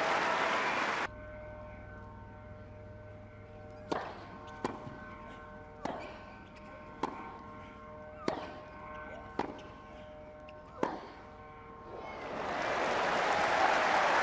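Applause cut off about a second in, then a tennis rally: about seven sharp racket-on-ball strikes roughly a second apart over a faint steady hum. Crowd applause swells up near the end as the point is won.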